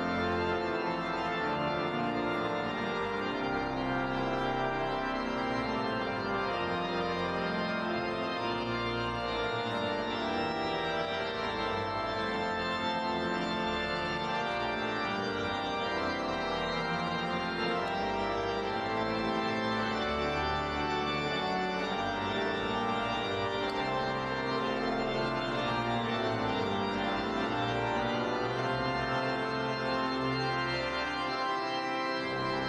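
Church organ playing slow, held chords that change every second or two, at an even level with no breaks.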